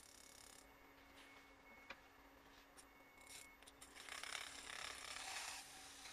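Near silence, with a single faint click about two seconds in and a faint scraping noise in the second half.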